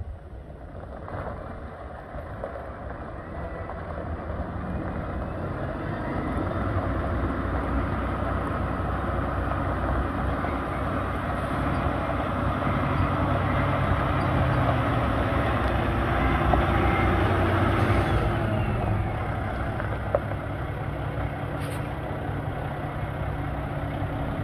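Paccar MX-13 diesel engine of a Peterbilt 579 semi tractor running, growing louder over the first several seconds, then easing back about three-quarters of the way through as a high whine falls away. A single short click is heard shortly after.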